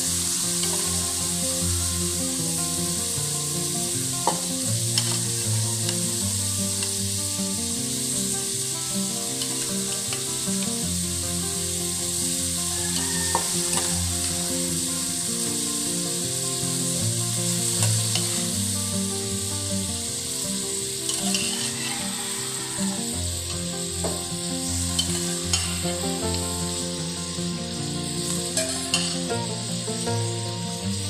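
Marinated pork sizzling steadily as it fries in an aluminium wok on a gas burner, with scattered clicks and scrapes of a spatula stirring against the pan.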